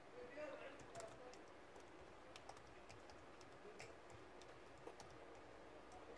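Faint, irregular keystrokes on an Asus laptop's built-in keyboard as a username is typed in.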